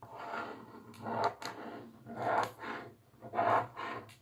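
Pen scratching across a sheet of paper in about five separate strokes, tracing around a hand.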